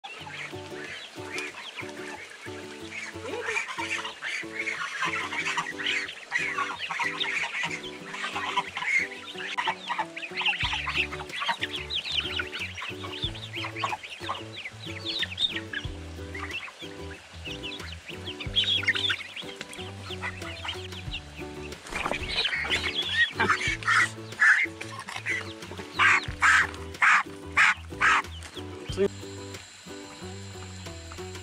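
Farm geese, goslings and chicks calling while they feed, mixed over background music, with a run of about five loud, evenly spaced calls near the end.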